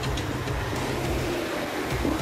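A steady low vehicle rumble, with faint murmured voices.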